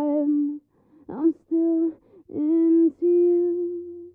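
A high voice singing slow notes held at nearly one pitch, about five in all, with the last note the longest.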